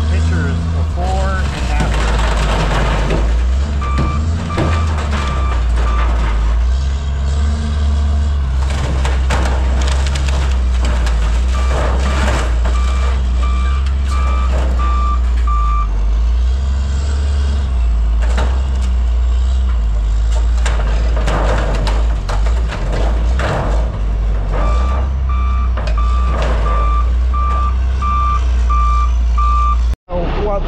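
A heavy machine's diesel engine running with a steady low drone, and a backup alarm beeping about twice a second in three spells while a machine reverses.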